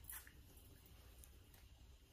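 Near silence: room tone, with a faint brief hiss at the very start.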